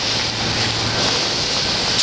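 Continuous dry rustling hiss of dried bay laurel branches being beaten against wire-mesh tables to strip the leaves from the stems, over a low steady hum.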